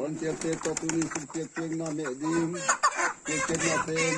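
Live white chickens clucking and squawking while carried upside down by the legs, with short bursts of wing flapping.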